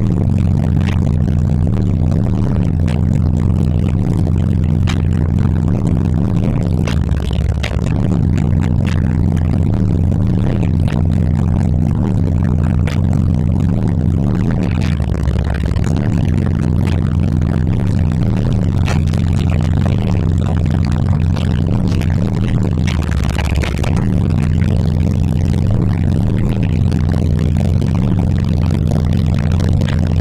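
High-powered car audio subwoofers playing bass-heavy music at high volume, heard from inside the car's cabin: a repeating line of deep bass notes that steps up and down, dropping to its lowest note about every eight seconds.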